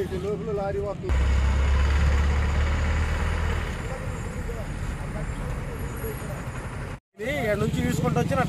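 A heavy vehicle's engine running with a steady low rumble for a couple of seconds, then a lighter, even roadside hum. Speech is heard briefly at the start, and a man starts talking near the end.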